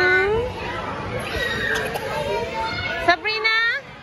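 Children's voices at play: a young girl's high, rising cry at the start, a mix of children's chatter and calls, then a short high shriek that falls in pitch about three seconds in.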